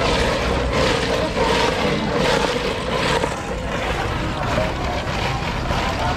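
Busy street-market background noise: a steady low rumble under general bustle, with no clear speech.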